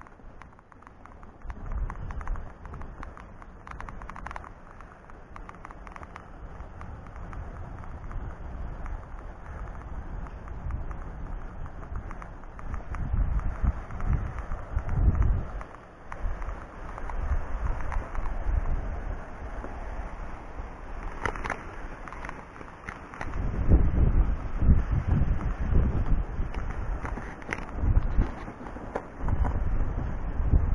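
Wind buffeting the camera microphone in uneven gusts, a low rumble that surges and drops, growing heavier in the last quarter.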